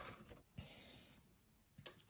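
Near silence: a faint breath through the nose lasting about half a second, early on, and a couple of soft clicks.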